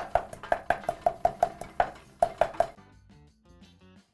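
Granite mortar and pestle pounding dry spices: quick, sharp strikes of stone on stone, about five a second, each with a short ring, stopping about two and a half seconds in.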